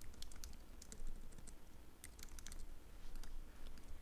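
Computer keyboard typing: a run of light, irregular key clicks in short bursts as a phrase is typed.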